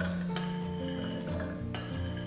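Background music with steady held notes. Under it, two light clinks as cooked chickpeas are tipped from a ceramic bowl into a plastic blender jug.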